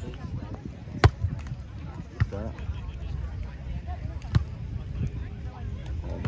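A volleyball struck hard by hand three times, about a second in, just after two seconds and a little past four seconds, the first the loudest: sharp slaps of a hit, a dig and a set in a beach volleyball rally. Under it runs a steady low rumble.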